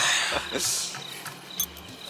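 People laughing and gasping, with a high breathy burst of laughter about half a second in that trails off. Crickets chirp faintly behind.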